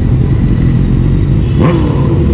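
A 2020 Honda Gold Wing's flat-six engine running steadily at low road speed, heard from the rider's seat together with rushing wind and road noise.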